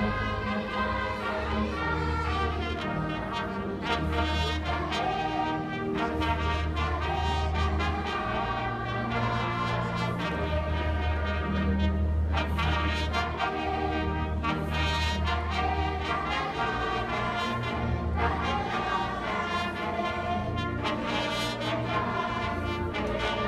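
An orchestra led by brass, with trumpets and trombones, playing music over a bass line of long held notes.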